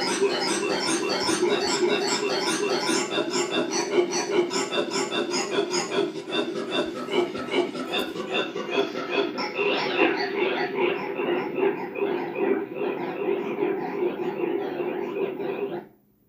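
A voice crying out in rapid, repeated "ah" sounds, about three a second, that cuts off suddenly at the end.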